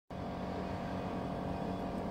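A steady low mechanical hum over an even background noise, unchanging throughout.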